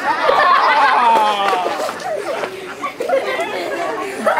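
Several children's voices chattering and talking over one another, with no clear words.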